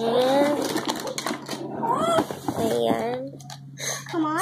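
A person's voice in short pitched phrases, with a few light clicks and a steady low hum underneath.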